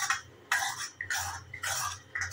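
Steel ladle stirring and scraping semolina in hot ghee around an iron kadhai while it roasts: three rough scraping strokes about half a second apart, over a low steady hum.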